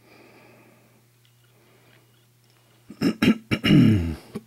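A man clears his throat loudly about three seconds in, after a few faint seconds with only a low steady hum underneath.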